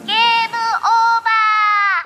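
Music: a high, electronically processed vocal holds a few long notes that slowly sink in pitch, with a quick dip in pitch near the middle, then stops abruptly.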